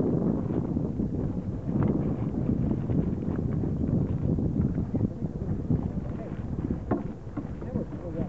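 Wind buffeting the microphone on the water, with faint voices in the background and a couple of brief knocks.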